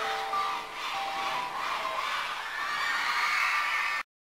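The closing notes of a pop song's music, held tones changing every half second or so, with a studio audience of fans screaming and cheering. The cheering grows louder toward the end.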